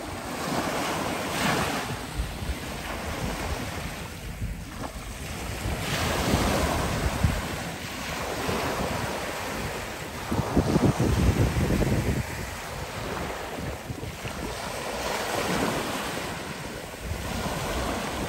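Small waves breaking and washing up a sandy shore, swelling and fading every few seconds, with wind buffeting the microphone.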